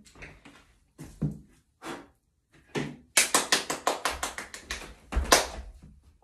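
Hand clapping: a few scattered claps, then a quick run of about a dozen claps a little past halfway, and one loud clap near the end.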